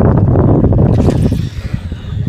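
Wind buffeting the microphone on an open boat: a loud, low rumble that drops away about one and a half seconds in.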